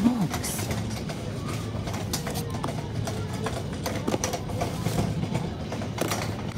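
Shop ambience: indistinct background voices over a steady low hum, with a few light knocks and clicks.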